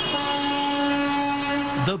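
A vehicle horn sounding in traffic, one long steady blast that cuts off near the end.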